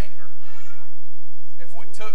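A high-pitched, drawn-out voice sound of under a second, followed by a man speaking again near the end.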